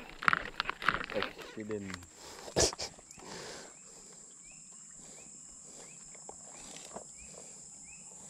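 Insects droning steadily at a high pitch, joined from about three and a half seconds in by a short rising chirp repeated roughly every half second. Low voices and a single click come in the first few seconds.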